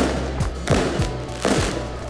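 Fireworks going off, several sharp bangs in quick succession, over background music.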